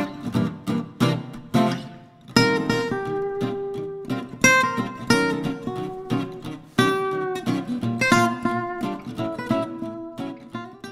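Acoustic guitar music: quick strummed chords for about two seconds, then picked notes that ring out.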